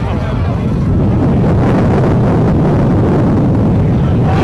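Wind buffeting the microphone with a steady low rumble that swells about a second in, with faint crowd voices underneath.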